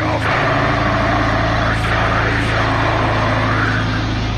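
Heavy metal music: long, sustained low distorted notes that shift pitch about a third of a second in, with harsh, wordless vocals over them.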